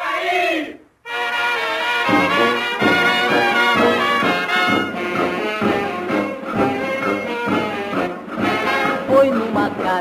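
A sung note ends about a second in, then after a brief break a brass-led band starts an upbeat instrumental intro with a steady beat, leading into a sung samba-era song.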